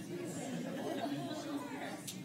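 A roomful of people chatting at once in small groups, many conversations overlapping into a steady murmur of voices.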